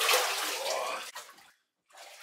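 Water splashing and sloshing in a cold-plunge tub as a person climbs out of it, loudest at first and dying away, with fainter splashing returning near the end.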